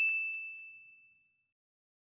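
Notification-bell "ding" sound effect, one bright chime that rings and fades away about a second in.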